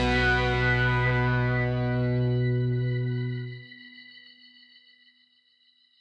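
The closing held chord of a rock song on distorted electric guitar, ringing steadily. The low notes cut off about three and a half seconds in, and the higher notes fade to near silence over the next second or so: the end of the song.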